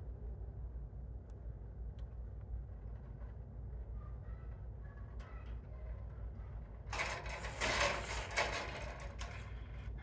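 Hand wire strippers working on a fluorescent ballast's lead wires: a few faint clicks, then a stretch of scraping and rustling about seven seconds in as the insulation is pulled off, over a steady low hum.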